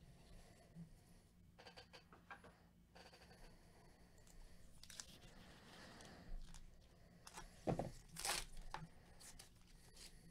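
A trading-card pack's wrapper crinkling faintly in nitrile-gloved hands. Near the end comes a short thump and then a ripping tear as the pack is torn open, followed by the rustle of cards being handled.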